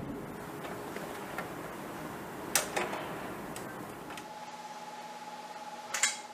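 Workshop room sound with a couple of sharp clicks, like metal parts being handled, about two and a half seconds in, and a few fainter ticks. A faint steady hum comes in after about four seconds.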